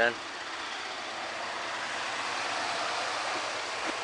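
Steady running noise of an idling patrol SUV up close, an even engine-and-fan rush with a faint low hum, growing slightly louder as the microphone moves along the vehicle.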